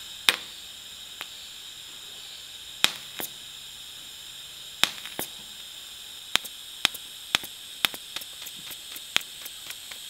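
Pulsed DC TIG welding arc on thin stainless steel, giving a steady high hiss. Sharp clicks break into it, a few at first, then about two a second in the second half.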